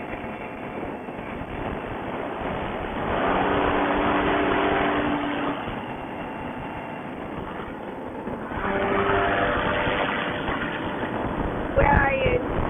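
A paramotor's two-stroke engine droning steadily in flight, under a rushing noise. It swells louder twice, about three seconds in and again near nine seconds.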